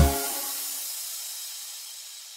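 The end of a children's song: the music cuts off and a high, even hiss left after it fades away steadily.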